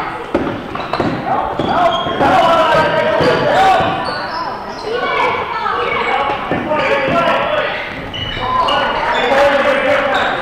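A basketball bouncing on a gym floor as it is dribbled, with children and spectators calling out, echoing in a large gymnasium.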